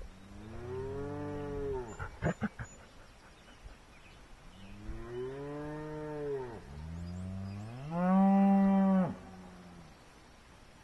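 Cattle mooing: three long moos, each rising and then falling in pitch, the last one the loudest and cutting off about a second before the end. A few short sharp sounds follow the first moo.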